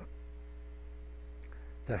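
Steady low electrical mains hum with a few faint steady overtones, and one faint click about one and a half seconds in.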